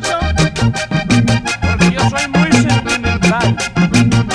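Vallenato music without singing: a button accordion plays the melody over a steady, evenly repeating percussion beat and a pulsing bass line.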